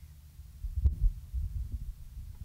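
Handheld microphone handling noise: low thumps and rumble as the mic is held and moved, with one sharp click a little under a second in.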